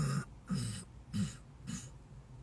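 A man clearing his throat with four short coughs in quick succession.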